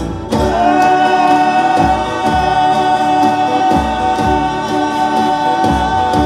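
Folia de Reis group singing a long held chord in several voices, the chord sliding up into pitch just after the start and then sustained. Strummed acoustic guitars and a cajón thumping about once a second accompany it.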